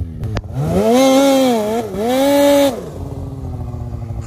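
Lynx snowmobile with a 146-inch track revving hard while stuck in deep snow: the engine climbs from idle, holds high with a short dip in the middle, and drops back to idle about three seconds in. A rushing hiss rides along with the revs.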